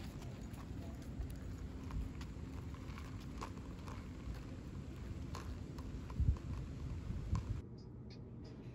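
Footsteps on a concrete sidewalk, a light irregular tapping over a steady low outdoor rumble, with two louder low thumps of wind on the microphone near the end. Just before the end the sound drops to a quieter indoor room tone.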